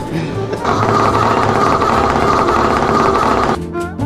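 A vibrating massage lounge chair's motor running with a loud, steady, rapid buzzing rattle. It starts about half a second in, after a short laugh, and cuts off suddenly near the end, over background music.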